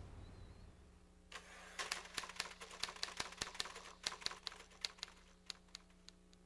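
Typewriter keystrokes: a quick, uneven run of sharp key clacks, several a second, starting a little over a second in and stopping just before the end. The typing is a sound effect for a typewritten quote.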